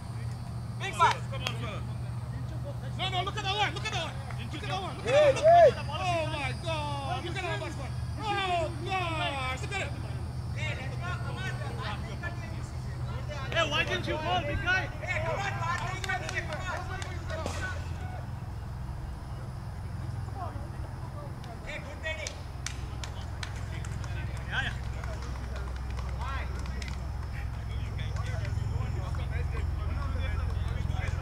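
Distant, indistinct voices of players calling to one another across a cricket field, busiest in the first half and loudest about five seconds in, over a steady low outdoor hum.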